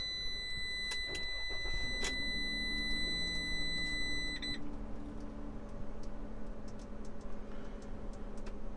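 Ram ProMaster dashboard warning tone with the key in the ignition: one steady high beep that stops about four and a half seconds in. A click and a low electric motor hum come in about two seconds in.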